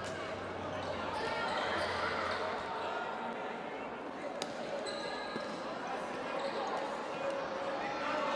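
Echoing sports-hall din of a futsal match: indistinct voices of players and spectators, with occasional sharp knocks of the ball being kicked on the indoor court.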